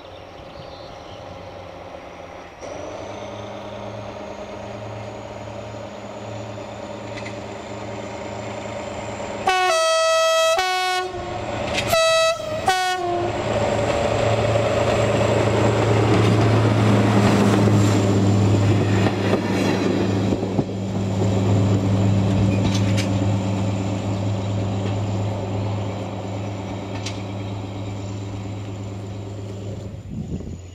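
X2830, an X2800-class diesel railcar, approaching with its engine running. It sounds its horn in a long blast about a third of the way in and a shorter one about two seconds later. It then passes close by, its engine loudest, and the rumble fades away.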